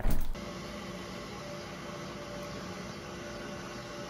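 Steady, even mechanical hum with a few faint held tones under it.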